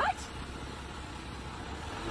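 A Jeep SUV's engine idling, a faint, steady low hum.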